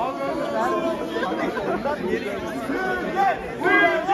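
Crowd of students chattering and calling out over one another, with louder shouting from several voices near the end.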